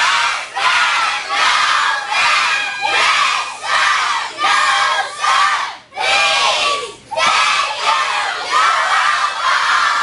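A group of children shouting together in unison, loud voices in a steady rhythm of about one shout every three-quarters of a second, with a brief break about six seconds in.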